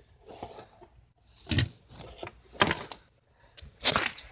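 Handling noise from a phone and a cardboard toy box being moved about: faint rustling with three sharp knocks about a second apart, the last near the end.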